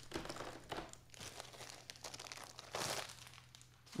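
Faint crinkling and rustling of plastic as CGC-graded comic slabs are handled and one is lifted from its stack, with a louder rustle about three seconds in.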